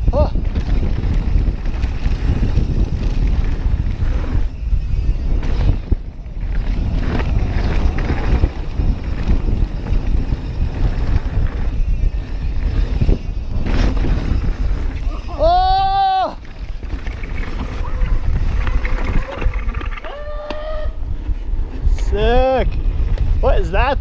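Wind buffeting the bike-mounted camera's microphone, mixed with tyres rolling and rattling over a dirt trail during a fast mountain-bike descent, loud and mostly low-pitched throughout. A rider gives a rising-then-falling whoop about two-thirds of the way in, and shorter calls of "whoa" near the end.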